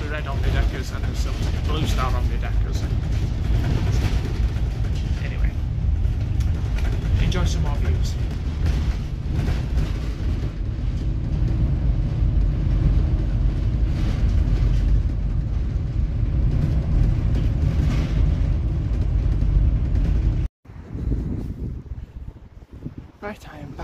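Steady low engine and road rumble from inside a moving bus, with some indistinct talking early on. It cuts off abruptly near the end, and quieter outdoor sound with wind on the microphone follows.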